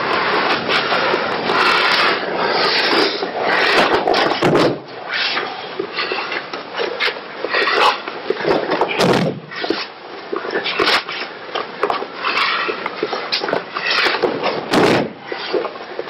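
Cloth rustling and feet scuffing on a padded mat over a steady noisy background, with three heavy thuds about five, nine and fifteen seconds in as a body is thrown down onto the mat.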